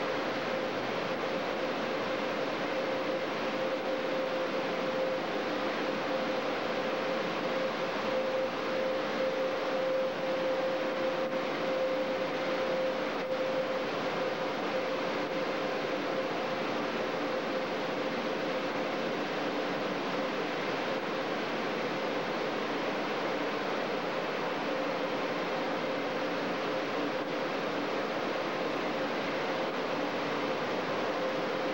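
Dryer blowers of a Mark VII Aquajet GT-98 in-bay car wash running steadily: a constant rush of air with a steady hum.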